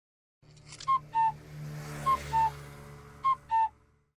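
Three pairs of short two-note whistles, the second note of each pair a little lower, spaced about a second apart over a low steady hum.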